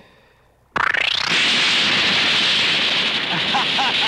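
Film sound effect of a device blowing up: a sudden blast about three-quarters of a second in that sweeps up into a loud, steady, hissing rush as it throws off sparks and smoke.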